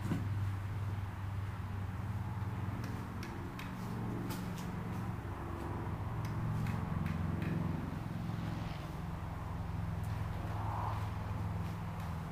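A steady low mechanical hum with a few faint clicks over it.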